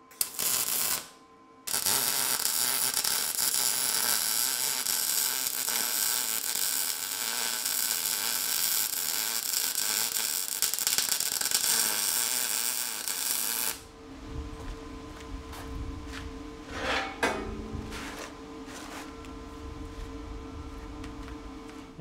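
MIG welding arc on steel tube, crackling steadily: a short tack about a second long, then one continuous bead of about twelve seconds. After the arc stops, a quieter steady hum with a few knocks.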